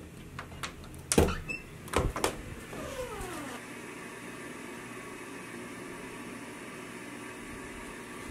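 A bedroom door's knob and latch turned and the door pushed open, with several clicks and two louder knocks in the first two seconds and a short creak falling in pitch about three seconds in. After that, a steady, even room hum.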